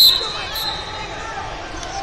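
A loud, high-pitched referee's whistle blast that cuts off just after the start and rings on briefly in the big hall, over a background of many people talking.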